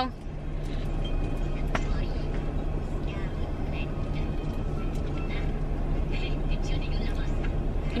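Steady low hum of a car's idling engine and ventilation heard inside the cabin, with a single sharp click a little under two seconds in and a few faint small noises later.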